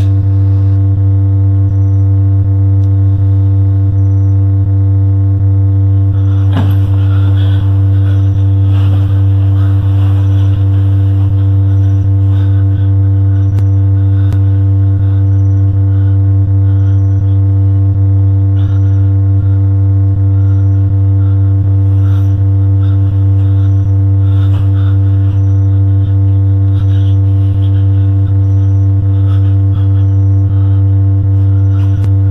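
A loud, steady low droning hum with a faint tick repeating about every second and a bit. Soft rustling comes in briefly a few seconds in.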